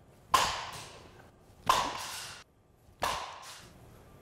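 Softball bat striking soft-tossed softballs three times, about a second and a half apart: sharp cracks, each followed by a short echo.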